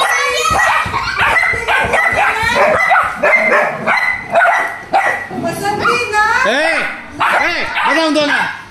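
Pitbull puppies yipping and whining in a quick, continuous run of short high-pitched calls, with a few longer rising-and-falling whines near the end.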